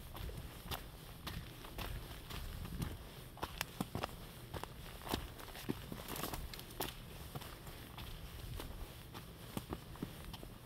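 A hiker's footsteps on a forest trail, each step a short crunch, about two steps a second at a steady walking pace, over a low rumble.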